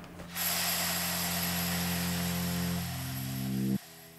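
A steady machine noise with a faint high whine, over low sustained music notes. Both stop abruptly near the end.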